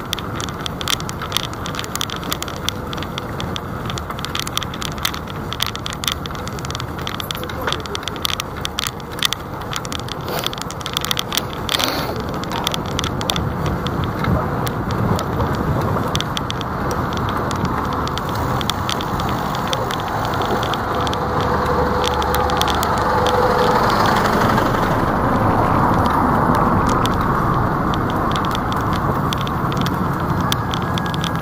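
City road traffic heard from the moving camera in the lane, with rapid clicking and rattling through the first half. A red double-decker bus runs close alongside in the second half, where the traffic noise grows louder and steadier.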